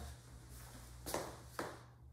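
Two faint footsteps about half a second apart, about a second in, over a low steady room hum.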